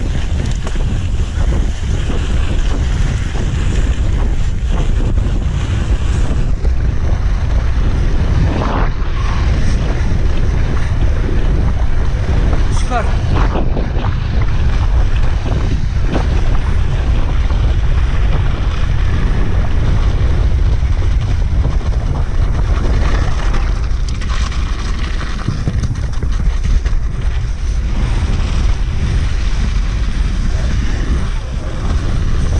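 Loud, steady wind buffeting on a helmet camera's microphone during a fast mountain-bike descent down a snow slope, with a few brief faint squeaks in the middle.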